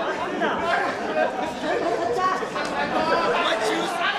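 Several people talking at once, with voices overlapping throughout.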